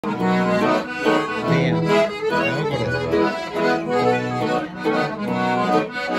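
Button accordion playing a lilting mazurka melody, backed by a strummed acoustic guitar with a recurring bass note.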